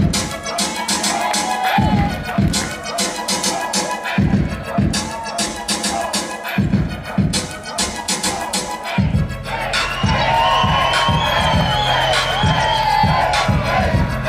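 Hip-hop dance mix over a sound system, built from irregular hits and scratch-style cuts, with a crowd cheering. About nine seconds in, a steady deep bass and a regular beat come in under it.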